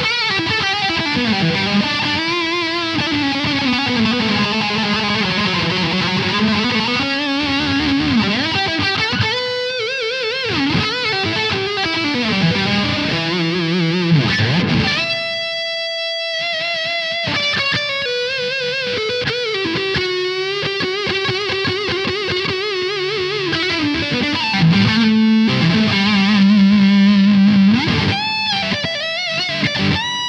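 Ibanez AR220 electric guitar with humbucking pickups, played through a distorted high-gain amp sound: a lead line with string bends and vibrato. One long note is held about halfway through, and a low note is held shortly before the end.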